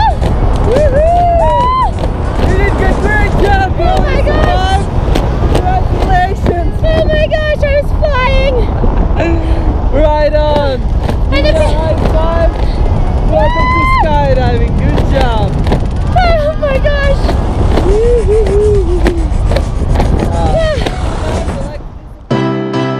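Pop song with a singer's voice, the melody sliding and holding long notes over a dense, steady low backing; it stops just at the end.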